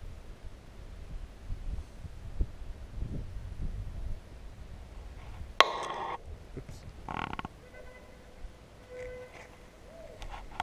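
Low wind rumble on the microphone, then two short, loud sniffs close to the microphone, about five and a half and seven seconds in.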